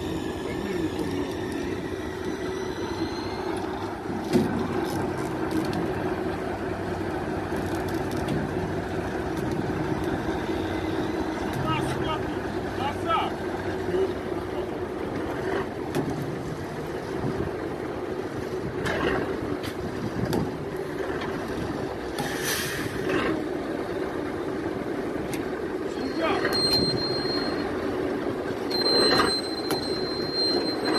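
A vehicle engine running steadily while a cow is hoisted out of a hole by rope, with a continuous hum and a thin high whine coming in near the end.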